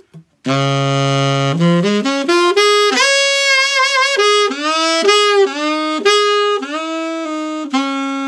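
Conn 6M alto saxophone played solo. It opens on a low held note of about a second, then runs through a flowing phrase of notes, with vibrato on the longer ones, ending on a sustained note.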